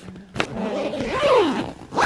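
A zipper on a stuffed black fabric bag being pulled shut, rasping after a click about half a second in. A drawn-out vocal sound of effort, falling in pitch, runs over it through the middle.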